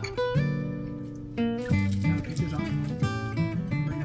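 Background music on acoustic guitar: a few held notes, then a steady plucked rhythm from a little over a second and a half in.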